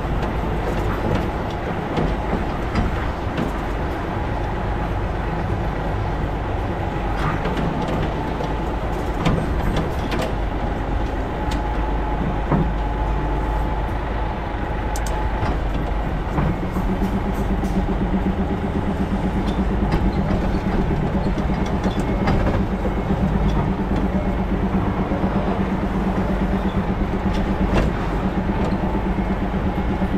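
Diesel engine of a Hino Profia semi-trailer tractor running steadily as the rig manoeuvres slowly. Its low note grows steadier and a little louder about halfway through, with a few small clicks and knocks.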